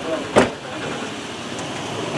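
A car door slamming shut once, about half a second in, against a background of voices.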